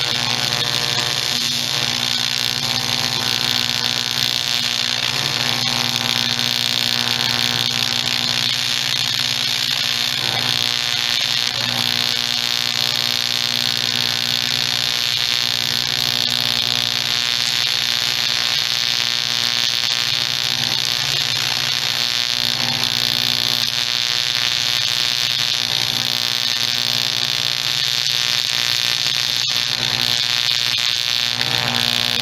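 TIG welding arc buzzing steadily while a crack in a two-stroke dirt bike's engine case half is welded.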